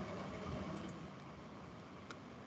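Steady, faint background room noise: a hiss over a low rumble, with no speech.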